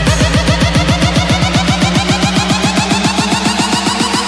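Electronic music build-up: a short pitched note that drops in pitch, repeated rapidly and speeding up, from about seven to about ten hits a second.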